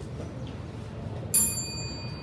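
A small metal timekeeper's bell struck once, a sharp bright ding that rings on for about half a second.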